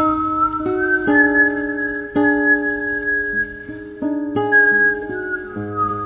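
A woman whistling long held notes over a karaoke backing track of plucked guitar arpeggios. The whistle steps up in pitch about a second in and comes back down near the end.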